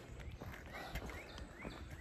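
Faint footsteps on a paved path, a scatter of small ticks, with a low rumble of wind and handling noise on a handheld phone's microphone.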